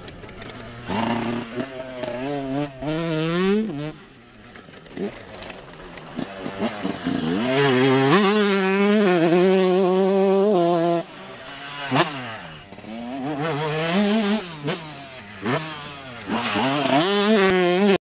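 Two-stroke dirt bike engine revving in repeated bursts, its pitch wavering up and down, with a longer held rev in the middle. There is one sharp crack about twelve seconds in.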